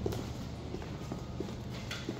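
High-heeled shoes clicking on a tiled floor in an even walking rhythm, a step about every two-thirds of a second, over a steady low hum.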